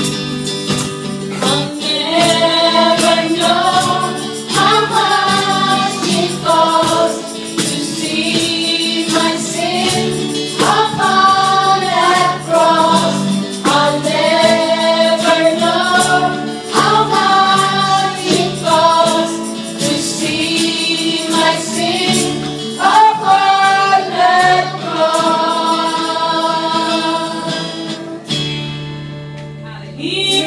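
A live worship band playing a song: women singing into microphones over acoustic and electric guitars, a keyboard and a cajón keeping a steady beat.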